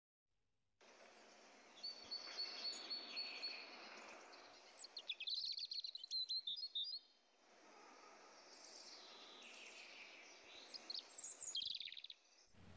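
Faint birdsong over a steady outdoor hiss: small birds chirping and trilling, with clusters of quick chirps about five seconds in and again near the end.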